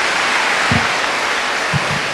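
Audience applauding steadily, a dense clatter of many hands clapping, with two brief low thuds under it.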